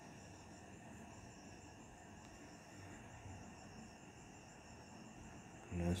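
Faint, steady chirring of crickets over low background hiss.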